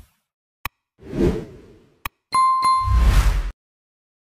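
Edited intro sound effects: a single click, a rising whoosh, another click, then two quick bell-like dings followed by a low, booming whoosh that cuts off suddenly.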